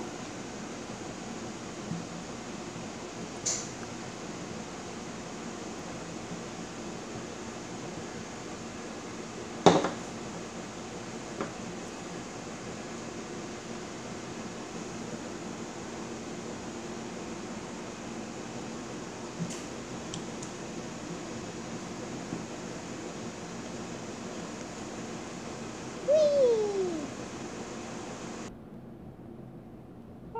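Steady room hiss with a few sharp, light clicks of small plastic toy parts being handled and set in place.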